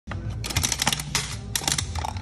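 Metal crank of a coin-operated capsule vending machine being turned, giving quick runs of ratcheting clicks, with music underneath.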